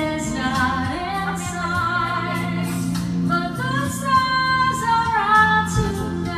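A woman singing into a handheld microphone, her held notes wavering with vibrato, over instrumental backing music.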